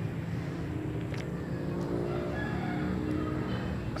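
A steady, low engine hum with no break.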